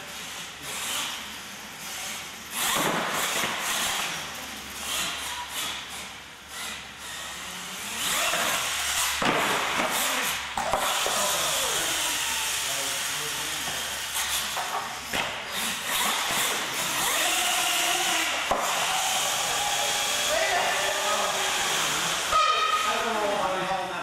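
Radio-controlled monster truck driving and tumbling on a concrete floor, with knocks early on, then a louder steady rushing noise with voices through the second half.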